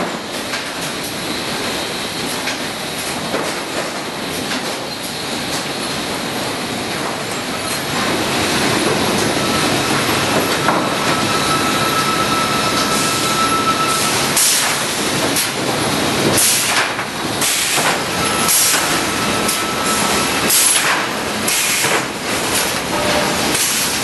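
Sawmill machinery running as chain conveyors carry sawn pine boards: a steady mechanical clatter and rumble that grows louder about eight seconds in. In the second half there are repeated sharp knocks of boards and chains, and a faint thin whine comes and goes.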